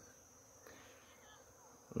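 Faint outdoor ambience with a steady, thin, high-pitched insect drone.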